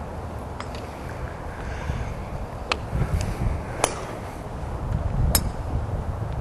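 Four sharp, distant clicks of golf clubs striking balls elsewhere on the practice range, spread a second or two apart, over a low rumble of wind on the microphone.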